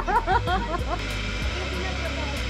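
A person's voice in short quick bursts through the first second, then the steady low hum of an electric potter's wheel turning.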